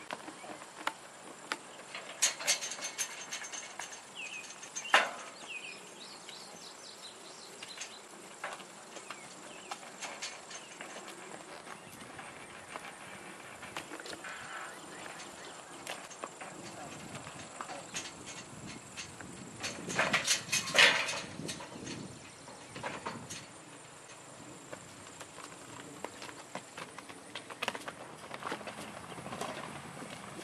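Metal pipe gate being opened from horseback, clanking and rattling sharply a few times: about two seconds in, near five seconds with a short metallic ring, and again around twenty seconds. A horse steps about on packed dirt between the clanks.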